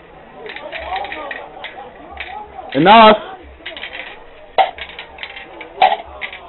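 Light plastic clicks and clinks from a K'nex-style Rube Goldberg contraption as its parts move, with two sharper clicks near the end. An excited shout of "they're going" about three seconds in is the loudest sound.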